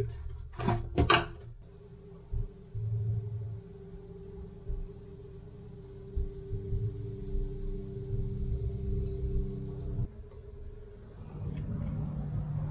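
A steady electrical hum of a few held tones that cuts off abruptly about ten seconds in, over uneven low rumbling from the camera being carried.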